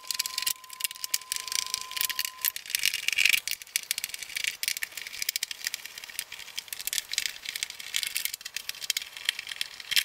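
Screwdriver backing the stand's mounting screws out of the TV's metal back panel: a dense, irregular run of small metallic clicks and rattles. A faint steady tone sounds for the first two seconds or so.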